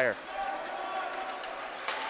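Ice hockey rink ambience with a single sharp crack of a stick striking the puck near the end, as a pass is made.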